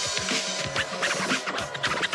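DJ scratching a vinyl record on a turntable, with rapid back-and-forth scratches over a backing track.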